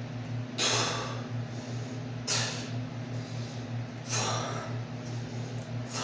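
A man's forceful exhales, one with each rep of an overhead dumbbell lift, three in a row about every two seconds, over a steady low hum.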